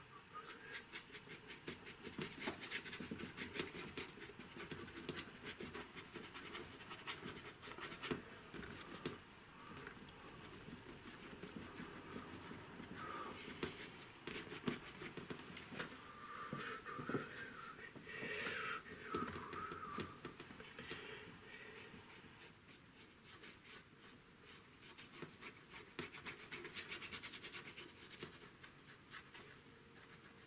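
Paintbrush scrubbing and dabbing oil paint onto an MDF board in runs of quick, scratchy strokes, with short pauses between the runs.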